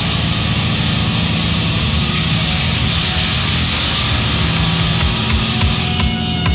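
Sludge metal band playing live: a dense, sustained wall of distorted electric guitar and bass noise with no vocals, near the end of a song.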